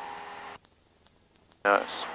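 Steady hum on a light aircraft's headset intercom audio. About half a second in it cuts out to near silence for about a second, then comes back as a man says "Nice."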